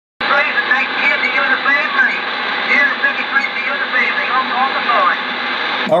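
A distant station's voice coming in over an 11-meter CB radio through a steady wash of static: a long-distance skip signal from New Zealand, thin and narrow in tone, the words mostly buried in the noise. It cuts off suddenly near the end as the transmission drops.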